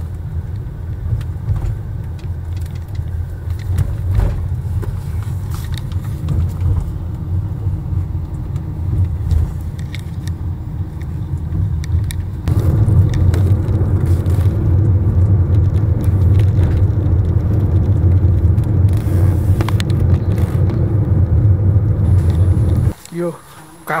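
Road and engine rumble heard from inside a moving car. It is a steady low rumble that gets louder about halfway through, then cuts off near the end as a voice begins.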